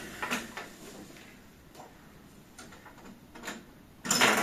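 Faint, scattered clicks and knocks of plastic LEGO pieces being handled and pulled apart on a desk, a handful of small taps spaced out over a few seconds.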